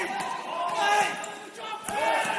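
Futsal players shouting and calling across a large indoor hall, with one sharp thud of the ball being struck on the wooden court just before the end.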